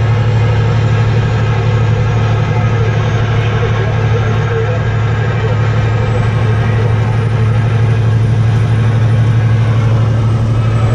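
Car engine and road noise heard from inside the cabin while cruising on a highway: a loud, steady low drone that holds even throughout.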